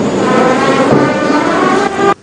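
Brass band playing slow, sustained ceremonial chords, cut off abruptly at the very end.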